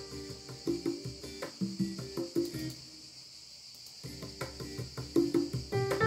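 Playback of a multi-instrument song arrangement from a computer music program, with pitched piano-like notes in a rhythmic pattern; the music thins out about halfway through, then picks up again. A steady high hiss runs underneath.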